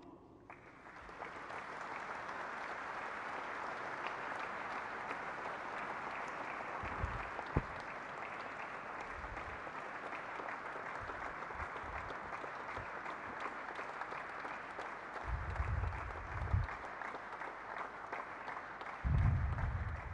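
Audience applauding steadily as a continuous patter of many hands clapping, with a few low thumps near the end.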